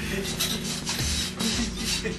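Repeated scratchy rubbing and rustling noises with dull low thumps, over faint music.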